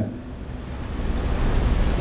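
Steady rushing background noise with a low hum underneath and no speech: room noise picked up by a lecture microphone.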